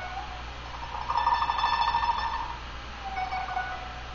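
Faint instrumental background music: a held, slightly wavering note a second in, then a lower held note near the end.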